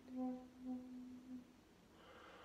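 Shakuhachi bamboo flute holding one soft, low note that swells twice and dies away about a second and a half in.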